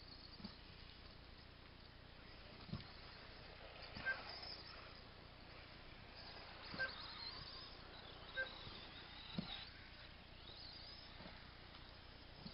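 RC off-road buggies racing: the faint high whine of their motors rises and falls as they accelerate and slow. Several short sharp clicks and knocks cut through, a few of them with a brief beep.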